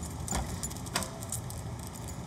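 A house door being unlatched and opened: two sharp clicks about half a second apart, with light metallic ticking, over a steady low hum.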